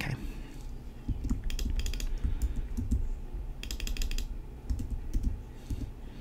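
Computer keyboard typing: several short, quick runs of keystrokes with pauses between them, as text is edited.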